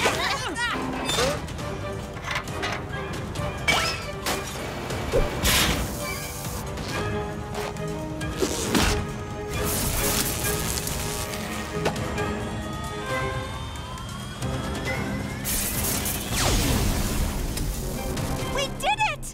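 Cartoon sound effects of a machine breaking down: a run of crashes and clanks with crackling electric sparks, and a rising whine in the second half, over background music.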